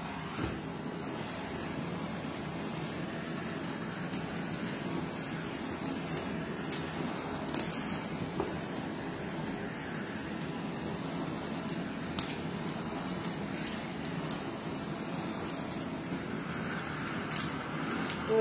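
Handheld gas blowtorch burning steadily with a constant hiss of flame as it singes the skin of raw chicken, with a couple of faint clicks partway through.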